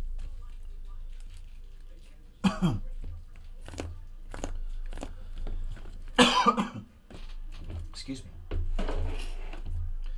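Shrink-wrapped trading-card hobby boxes being handled and set down on a padded table, giving a string of short taps and knocks. Brief wordless vocal sounds from the handler come through, the loudest a short harsh burst about six seconds in.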